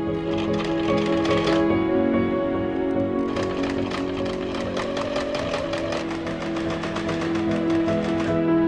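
Electric household sewing machine stitching in two runs, a short burst about a second long near the start and a longer run from about three seconds in, its needle ticking rapidly. Soft background music plays throughout.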